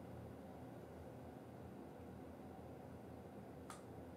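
Near silence: faint room tone with a low hum, and a single small click near the end.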